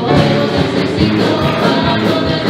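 Live worship song: women singing into microphones over musical accompaniment with a steady beat.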